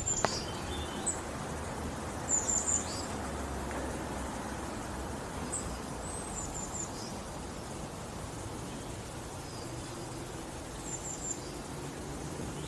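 Small birds chirping: a few short, high calls in brief clusters, spread out over steady low background noise.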